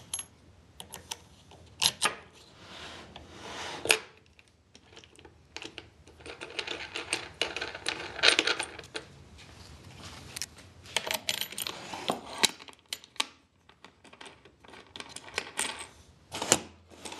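Handling of a shop-made plywood router-table fence: scattered clicks and knocks from its knobs, bolts and metal washers, and stretches of wood scraping as the fence is slid back and forth along the tabletop.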